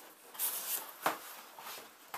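Cardboard packaging box being handled: a rustling scrape as the lid is lifted off, with one sharp knock just after a second in.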